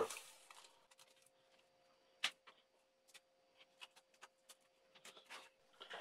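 Near silence with a faint steady hum and a few faint clicks and taps from hands handling a paper kite on a tabletop, folding its tissue and cellophane edge over the frame; the clearest is a single click about two seconds in.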